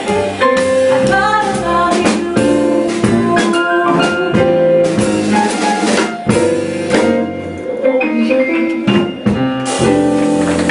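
Live jazz combo of piano, upright double bass and drum kit backing a woman singing held, wavering notes, with frequent drum and cymbal hits throughout.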